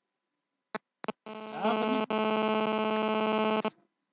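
A few short clicks, then a steady, buzzy electronic tone that swells briefly and holds for about two and a half seconds before cutting off suddenly.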